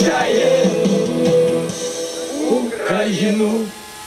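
A group of young men and women singing together in unison, the voices held on long notes; the singing fades out shortly before the end.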